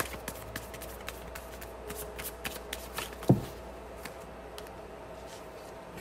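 Tarot cards being shuffled by hand: a run of quick, light clicks and snaps of cards, with one louder knock about three seconds in, thinning out in the second half.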